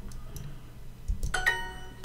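A few faint clicks, then about a second and a third in a short, bright electronic chime: the Duolingo app's correct-answer sound, confirming the typed answer is right.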